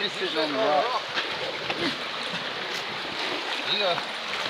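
Shallow creek water running steadily over rocks, with some splashing as an inflatable river tube carrying a man is shoved through the shallows. Voices and laughter come in the first second.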